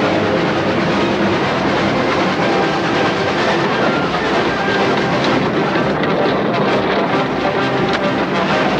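Cartoon sound effect of a steam train clattering along rails, mixed with background music.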